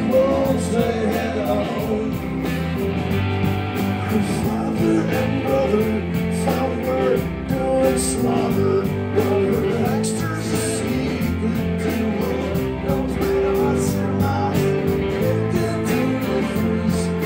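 Live rock band playing: electric guitars, bass guitar, drum kit and electric piano together in a steady rock groove.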